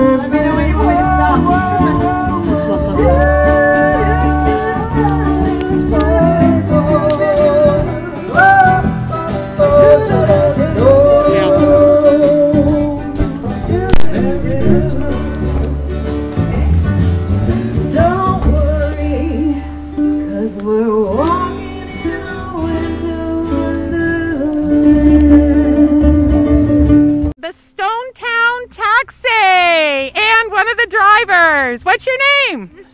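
Live acoustic band playing a song through a small PA: strummed acoustic guitars and a ukulele with a singer. The music breaks off abruptly near the end.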